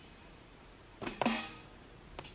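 Drum sounds from an iPad drum-pad app, tapped on its touchscreen: the ringing tail of a hit fades at the start, then two quick hits come about a second in, the second one's pitch dropping as it rings.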